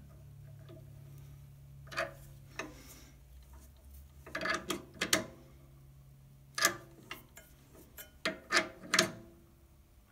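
A chuck key turning in a metal lathe chuck, giving a dozen or so separate metal clicks and ticks at uneven intervals as the jaws are tightened on an acrylic pen blank. A faint steady hum runs underneath.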